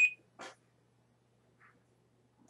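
The last beep of a high-pitched electronic alarm, stopping just after the start, followed by a single short rustle about half a second in, then near quiet.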